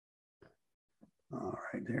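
Near silence with two faint ticks, then from about a second and a half in a man's drawn-out voice.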